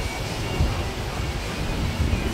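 Wind buffeting the microphone: a gusty low rumble.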